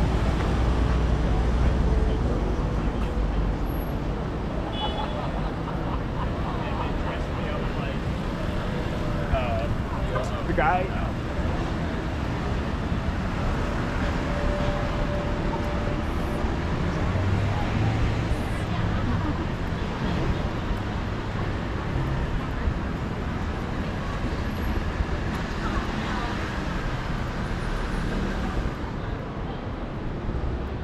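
City street traffic noise: a steady wash of passing cars, heavier at the start as a vehicle passes close by, with snatches of passersby talking about ten seconds in.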